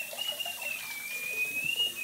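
Bathroom sink faucet running as small trumpet parts are rinsed under it, with a thin, high whistling tone over the water that wavers slightly in pitch.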